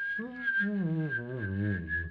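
A person whistling one steady high note while singing a low, sliding melody with the voice at the same time.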